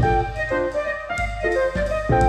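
Background music: sustained melody notes over a repeated bass beat.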